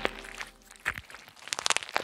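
A few sharp clicks and taps as a squishy rubber toy bat is fastened onto the bars, with a quick run of clicks near the end.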